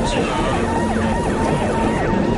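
Several emergency-vehicle sirens sounding together, their pitches quickly rising and falling over one another.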